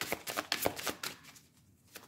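A deck of Doreen Virtue's Anges de l'amour oracle cards shuffled by hand: a quick run of card slaps and flicks for a little over a second, then a short pause near the end.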